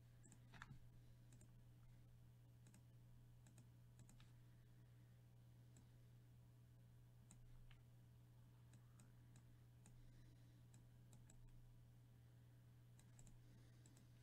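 Near silence: a steady low hum with faint, scattered computer mouse clicks, the strongest about half a second in.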